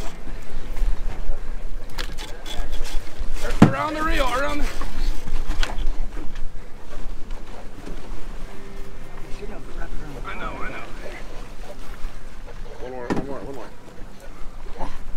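Steady low rumble of wind and sea on an open boat deck, broken by brief voices about four seconds in, again around ten seconds and near the end.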